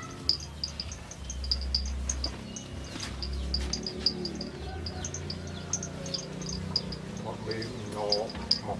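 Insects chirping in short, high-pitched pulses that repeat unevenly all through, typical of crickets, with a low rumble coming and going in the first half.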